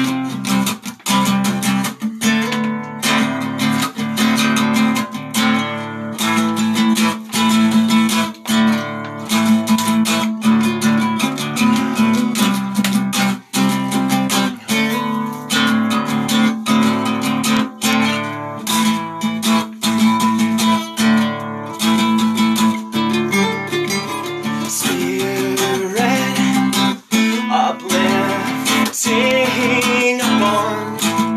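Guitar strummed in a steady rhythm, chords repeating throughout: the instrumental opening of a song, with no singing yet.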